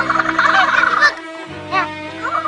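A cartoon character's rapid warbling, gobble-like call lasting about a second, then a few short up-and-down chirps, over light background music.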